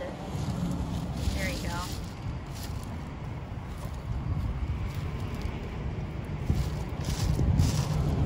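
Gloved hands scraping and rustling in gravel and soil while pulling weeds, with wind rumbling on the microphone.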